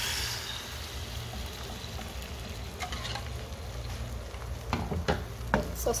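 Beaten egg landing in a hot frying pan and sizzling: loudest as it first hits the pan, then settling to a steady frying sizzle. A few short sharp clicks come near the end.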